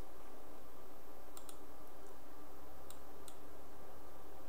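A few faint computer mouse clicks, in two pairs about a second and a half apart, over a steady low hum.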